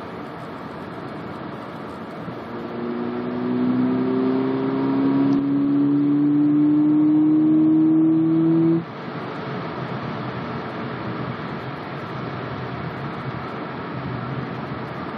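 2010 Mazda3's 2.0-litre four-cylinder engine under hard acceleration, heard from inside the cabin, its intake sound through a Simota carbon-fibre short ram intake growing louder as the engine note slowly climbs in pitch. The engine note cuts off suddenly about nine seconds in, leaving steady road noise.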